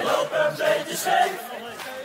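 Several voices singing together in a chant-like group vocal in a Dutch party song, with little or no bass underneath.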